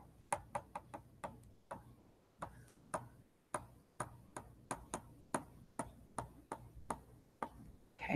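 Stylus tapping and scratching on a tablet surface during handwriting: a string of light, irregular clicks, about three or four a second.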